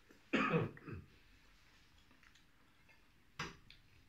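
A man coughing: one loud cough with a falling pitch about a third of a second in, a smaller one right after it, and a shorter cough or throat-clear near the end.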